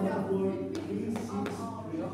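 Indistinct voices talking in a gym, with three short clicks a little under a second in.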